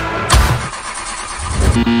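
A short loud hit, then a pickup truck's starter motor cranking the engine on a weak, undervoltage battery without it catching.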